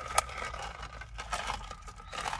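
A straw being unwrapped and fitted into the lid of a plastic iced-drink cup. Small crinkles, clicks and scrapes, with one sharper click just after the start.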